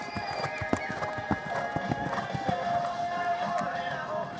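Hoofbeats of a horse cantering on a sand arena, a run of dull thuds, under pop music with singing.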